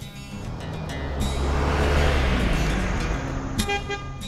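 A road vehicle driving past, its noise swelling to a peak about halfway through and then fading, with music underneath.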